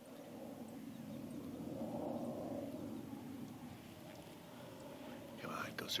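A fighter jet, taken for an F/A-18, rumbling overhead: the sound swells to its loudest about two seconds in, then slowly fades. A man starts talking near the end.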